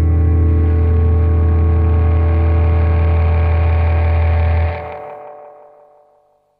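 A rock band's final held chord: a loud sustained low bass note under steady guitar tones. The bass cuts off about four and a half seconds in, and the remaining notes ring and fade away.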